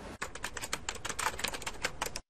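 A rapid run of light clicks, about ten a second, like fast typing on a keyboard.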